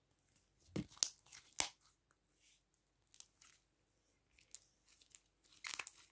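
Slime and its container being handled as the next slime is brought out: a few short crackling, tearing handling noises and clicks with quiet gaps between.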